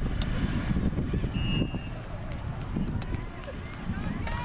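Wind rumbling on the microphone over an outdoor soccer field, with faint voices of players and spectators calling in the distance. A brief high steady tone sounds about a second and a half in.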